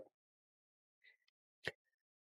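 Near silence, broken by one short click near the end.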